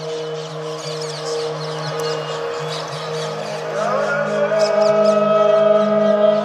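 Calm ambient lofi background music of sustained synth chords, shifting to a new chord with a rising glide about halfway through. Short high chirps, like birdsong from a nature track, run over it.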